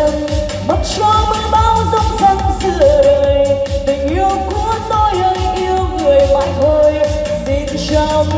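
Live Vietnamese pop music: a woman singing into a microphone over an amplified electronic backing track, with long held melodic notes and a steady pulsing bass beat.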